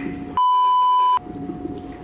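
An electronic beep added in editing: one steady, high tone lasting just under a second, with the rest of the sound cut out beneath it. A low, steady background sound continues before and after it.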